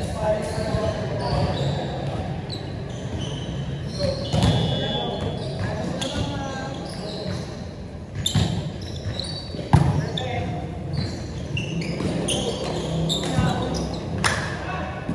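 Volleyball rally in an indoor hall: several sharp slaps of hands hitting the ball, the loudest nearly ten seconds in, over players' shouts and chatter that echo in the large space.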